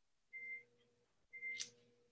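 Two faint, short electronic beeps about a second apart, each a single steady high tone.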